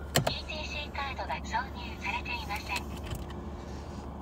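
Steady low rumble of a car heard from inside the cabin, with a couple of sharp clicks near the start and quiet talk over it.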